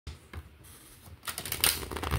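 A deck of tarot cards being riffle-shuffled by hand: a couple of light taps, then a rapid flutter of flicking cards through the second half.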